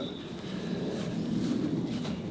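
Low, even outdoor background noise with no clear voices or distinct events.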